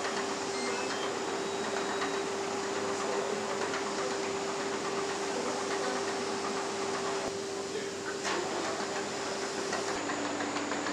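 Automated battery-cell assembly line machinery running: a steady machine hum with one held tone over a dense mechanical noise, the noise briefly changing about three-quarters of the way through.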